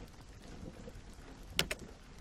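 Faint, steady rain ambience under a gap in the narration, with one sharp click about a second and a half in.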